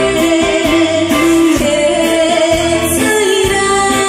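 A young woman singing live into a microphone through the stage's amplification, over instrumental accompaniment with a steady beat.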